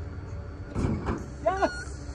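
A low steady outdoor rumble, with brief high-pitched vocal squeals about one and a half seconds in.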